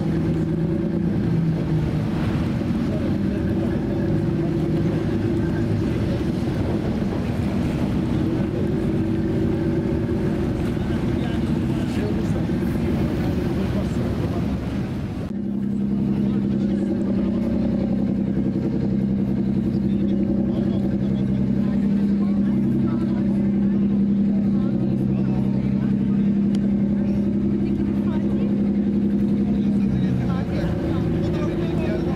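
A boat's engine running steadily with a low drone, its tone changing suddenly about halfway through.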